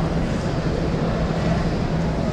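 Steady room rumble of a large exhibition hall, with a constant low droning hum running underneath.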